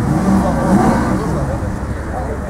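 Mercedes CLK 63 AMG Black Series's 6.2-litre V8 running as the car rolls slowly forward, its note swelling a little under a second in, with voices over it.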